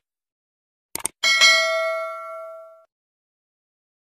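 Subscribe-button animation sound effect: two or three quick mouse clicks about a second in, then a single bright notification-bell ding that rings out and fades over about a second and a half.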